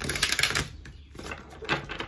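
A deck of oracle cards being shuffled by hand: a rapid run of card flicks in the first half-second, then another short flurry near the end.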